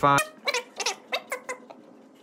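Sharpie marker squeaking on paper while writing, in about five short chirps that fall in pitch, followed by faint ticks as the tip dabs dots.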